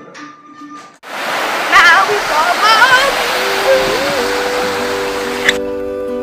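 Loud, steady rushing water, like a waterfall, with a wavering voice-like cry over it. It cuts off suddenly near the end as plucked guitar music comes in.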